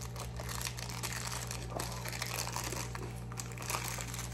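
Clear plastic wrapping crinkling and crackling as it is peeled off a small speaker by hand, in quick irregular crackles.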